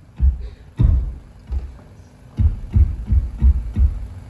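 Live band opening a song with low kick drum and bass hits, a few spaced-out hits at first, then settling into a steady beat of about three a second from about halfway through.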